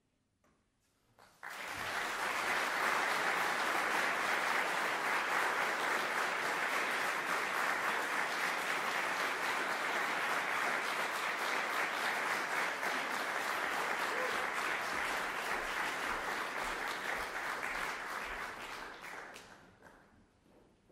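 Audience applause: after a brief hush it breaks out suddenly about a second and a half in, holds steady, then dies away near the end.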